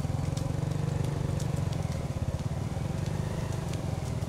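Several motorcycle engines running at low speed close by, a steady low rumble, with faint scattered clicks.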